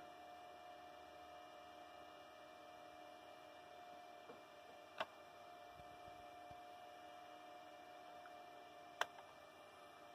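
Near silence with a faint steady hum and two sharp clicks, about four seconds apart.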